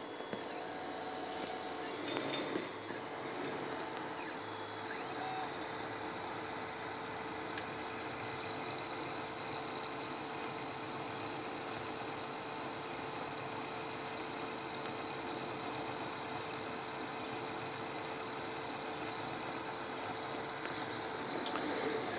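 Mendel Max 2.0 3D printer running mid-print: a low, steady whirring hum from its fans and stepper motors, with a constant faint tone throughout and some shifting motor tones in the first few seconds.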